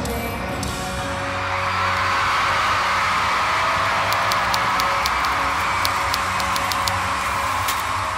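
Live concert audio: a rock song's last held notes give way, about a second in, to a large crowd cheering and screaming, with scattered sharp claps in the second half.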